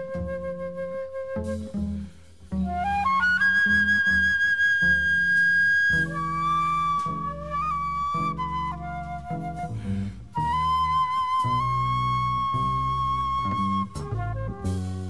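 Free-jazz trio playing: a flute holding long notes and leaping upward, over double bass lines.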